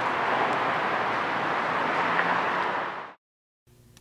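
Steady outdoor background noise, an even hiss with no distinct events. It cuts off abruptly to silence about three seconds in.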